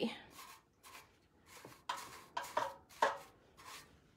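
A paintbrush swishing as it spreads wet polyurethane over a painted metal milk can, in several short, soft strokes.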